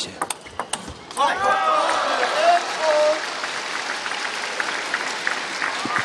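Table tennis ball ticking back and forth off bats and table for about a second, then the arena crowd cheers and applauds as the point ends.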